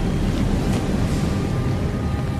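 Trailer sound effect of a burst of flame: a loud, steady rush of noise over a deep rumble, with faint held music tones underneath.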